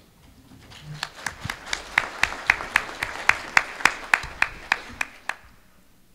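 Audience applauding, with one person's claps close to the microphone standing out as sharp, even claps at about four a second. It starts about half a second in and dies away about five seconds in.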